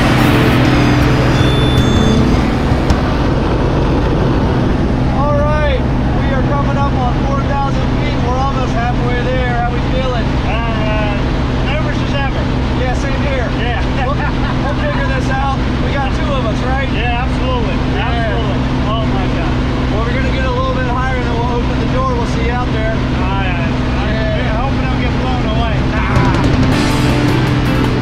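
Single-engine propeller plane's engine droning steadily in the cabin during the climb to jump altitude. From about five seconds in, people talk and laugh over the drone.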